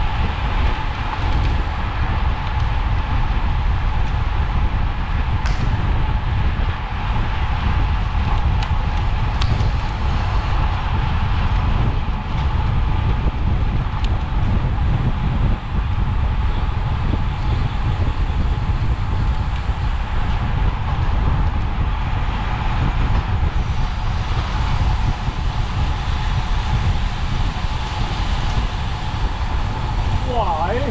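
Steady rush of wind on a bike-mounted camera's microphone while riding a road bike at about 40 km/h, with the hiss of tyres on asphalt underneath.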